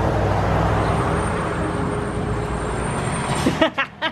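A heavy vehicle's engine running nearby, a steady low rumble that cuts off suddenly near the end.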